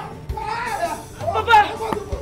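A person crying out and shouting without clear words, the voice swooping up and down in pitch and loudest about one and a half seconds in.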